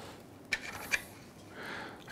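Quiet handling of a 3D-printed plastic part: two small clicks about half a second and a second in, then a faint rustle near the end.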